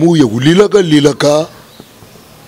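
A man's voice speaking, drawn out with a buzzy, wavering pitch, stopping about a second and a half in.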